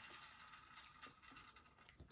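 Faint ticking and whirring of a board game's plastic spinner wheel, a run of small light clicks.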